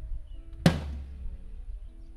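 A single drum-kit hit about two-thirds of a second in: a cymbal crash struck together with a low drum, ringing out and slowly fading. It is one isolated hit of a kit being soundchecked.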